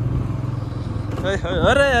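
Motorcycle engine running with a steady, even low beat as it is ridden; a man's voice exclaims near the end.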